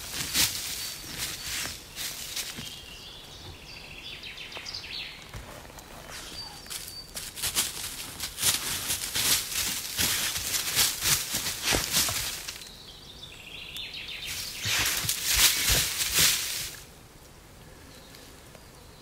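Dry fallen leaves rustling and crunching under a dog's paws as it walks and noses through the leaf litter, coming in several spells a few seconds long. A bird calls twice in the background, a few seconds in and again about two-thirds through.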